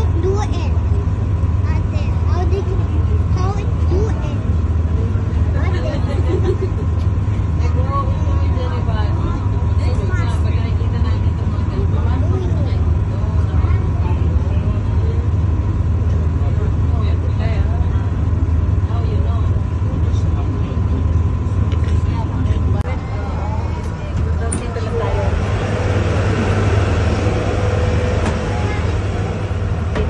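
Boat engine running with a steady low drone as the boat cruises, with people talking over it. A louder hiss comes in near the end.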